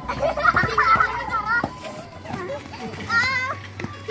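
Children shouting and calling to each other while playing football, high voices in bursts that are loudest in the first second and a half and again a little after three seconds, with a sharp knock midway.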